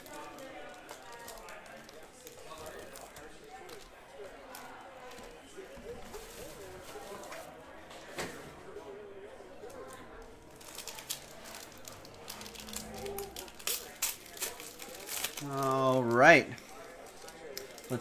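Trading cards and card packs being handled on a table: light clicks and wrapper crinkles that grow busier in the second half, under faint background talk. Near the end a voice calls out, rising sharply in pitch.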